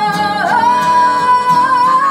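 A woman singing over a strummed acoustic guitar; about half a second in, her voice slides up to a higher note and holds it.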